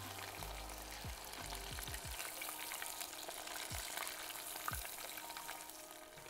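Chicken karaage deep-frying in a pot of hot oil, a steady sizzle, as the pieces are lifted out with metal tongs. A few light clicks of the tongs against the pot and bowl.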